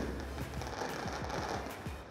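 Fireworks going off in rapid succession: a dense, unbroken crackle of many small bangs.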